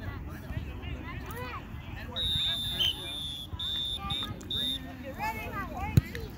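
A referee's whistle at a youth soccer game: one long blast of about a second, then a few short blasts. Players and spectators are talking throughout.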